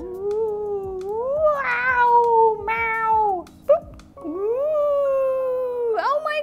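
A woman imitating a cat with long, drawn-out, wavering meows, about three in a row, the last one rising and then slowly falling.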